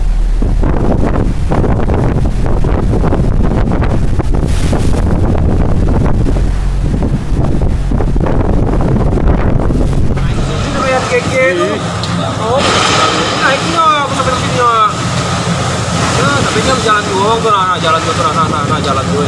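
Strong wind buffeting the microphone over rough, storm-driven sea, a heavy steady rumble for about the first ten seconds. Then the rumble drops away and indistinct voices can be heard over lighter wind and water noise.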